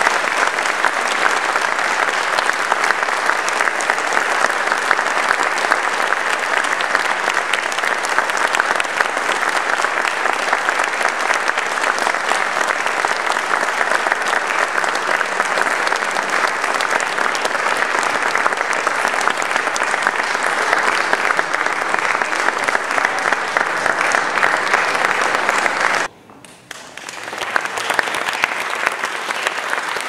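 Audience applauding steadily at the end of a piece, with a brief sudden drop in level near the end before the clapping picks up again.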